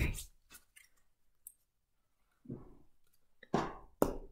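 A deck of oracle cards being shuffled by hand: a few soft clicks, then a sharper slap of the cards about three and a half seconds in.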